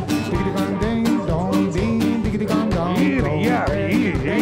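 Live band playing an upbeat ska-pop song: strummed acoustic guitar and band instruments over a quick, steady drum beat.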